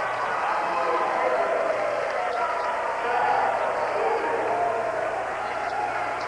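Crowd noise in a gymnasium: many spectators talking at once in a steady hubbub, with a few faint knocks or claps.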